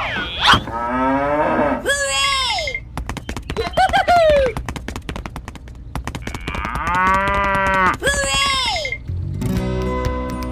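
Cartoon-style cow moo sound effects: several short calls that rise and fall in pitch, one of them repeated exactly, and a longer, steadier moo late on. Plucked-guitar music starts near the end.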